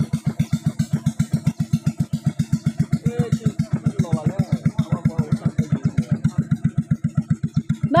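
Small boat engine chugging steadily at about eight to nine beats a second as the boat moves through floodwater. Faint voices are heard over it in the middle.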